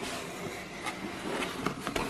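Cardboard box flaps being opened and lifted, a low scraping rustle of card with a few light clicks.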